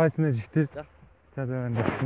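Loud men's voices: a quick run of short syllables, each falling in pitch, then one longer drawn-out call near the end.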